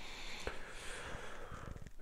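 A man breathing out faintly and steadily through the nose, with a few small mouth clicks.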